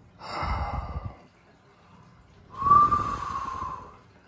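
A man's heavy breathing while sitting neck-deep in ice water: two long, noisy breaths about a second and a half apart, the second with a thin whistle, as if blown through pursed lips against the cold.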